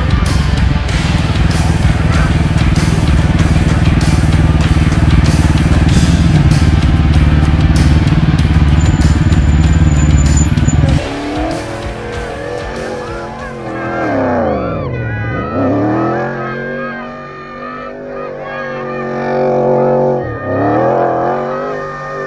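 Loud music with a steady beat for about the first half, which cuts off suddenly. A rally car's engine takes over, its revs dipping and climbing again twice as the car slides through sand.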